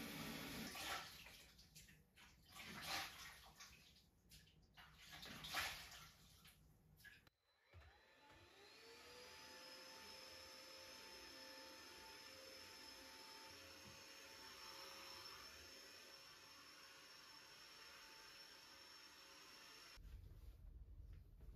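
Water splashing in a washbasin in irregular bursts, then after a sudden break a cordless stick vacuum cleaner's motor spins up, its whine rising and settling into a steady run.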